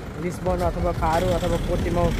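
A man talking over a steady low background rumble.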